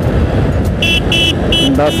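A horn beeping three short times in quick succession about a second in, over the steady engine and road noise of a motorcycle being ridden.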